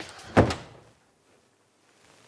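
A door shutting with a single thud about half a second in.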